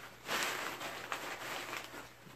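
Paper stuffing rustling and crinkling as it is handled and pushed back into a handbag, starting a moment in and going on unevenly.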